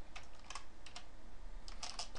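Typing on a computer keyboard: a quick, irregular run of individual key clicks as a line of code is entered.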